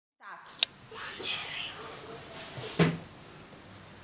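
A brief voice-like sound and a sharp click, soft rustling, then a louder knock a little before three seconds in.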